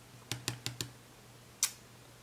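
Fingernails tapping on a paper sticker sheet: four quick light clicks in the first second, then one more near the end.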